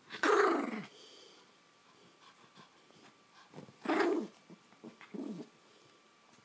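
Pomeranian growling in play as it chews and tugs at yarn: a short growl just after the start, another around four seconds in, and a smaller one a little after five seconds.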